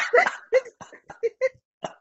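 A person laughing in a string of short, breathy bursts with brief gaps between them.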